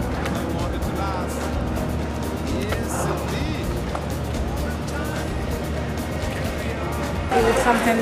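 Music playing with faint voices over a steady low engine rumble from the boat. Near the end it cuts abruptly to louder talking in a crowded room.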